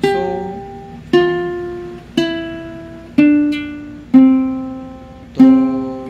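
Ukulele played one plucked note at a time, stepping down the C major scale from sol to do at about one note a second, each note ringing out and fading; the low do is plucked again near the end.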